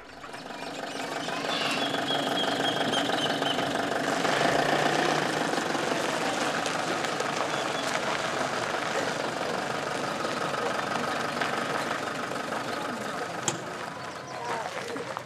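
An engine running steadily, fading in over the first couple of seconds.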